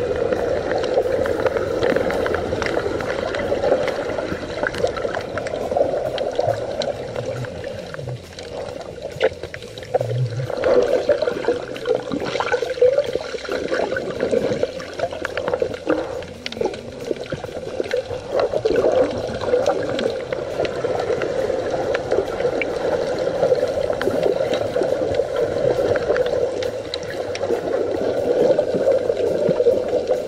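Muffled rushing and bubbling of seawater picked up by a camera held underwater, a steady wash with faint clicks.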